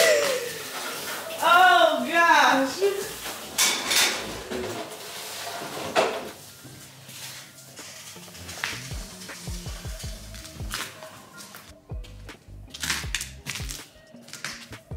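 A woman's brief wordless vocalising, then a couple of sharp knocks. From about halfway through, background music with a low beat.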